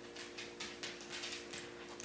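Faint, irregular scratchy strokes, a few a second, of wool roving being wrapped and pressed by hand over a burlap felting pad, over a steady low hum.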